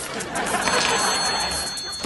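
Sitcom studio audience laughing, with a steady high-pitched electronic tone coming in under it less than a second in.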